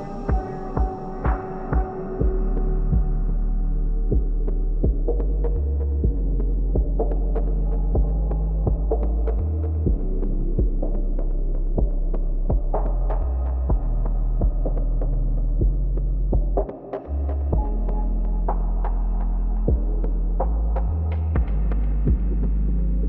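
A dark ambient soundtrack drone: a quick run of low thumps for the first two seconds gives way to a deep steady hum whose low note shifts every few seconds, with scattered clicks and crackles over it and a brief drop-out about seventeen seconds in.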